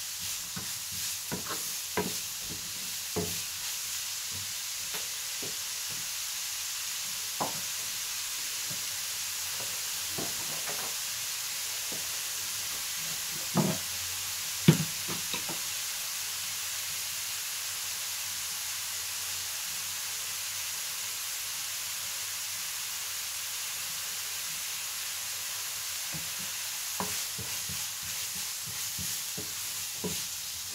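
Diced beetroot sizzling steadily in a nonstick frying pan, with a wooden spoon stirring and knocking against the pan now and then; the sharpest knock comes about halfway through, followed by a stretch of sizzling alone.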